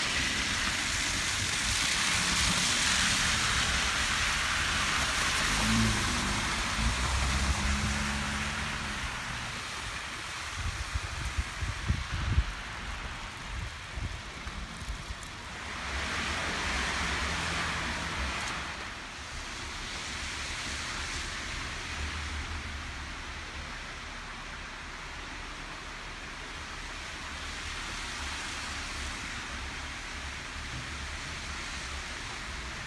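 Traffic on a snow-covered, slushy street: a steady hiss of car tyres through slush over a low engine rumble, loudest for the first several seconds and again briefly after the middle, with a few low thumps about ten to thirteen seconds in.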